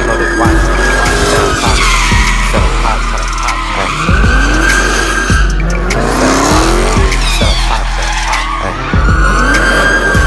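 Dodge Challenger's tyres squealing in a long, wavering screech as it spins donuts, the engine revving up and down with it. A hip-hop beat with deep bass hits plays underneath.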